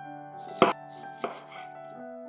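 Kitchen knife chopping through cauliflower onto a wooden cutting board: two sharp strikes, the louder about half a second in and a second just over a second in, over soft background music.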